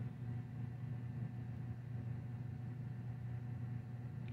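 Quiet room tone: a steady low hum with no other distinct sounds.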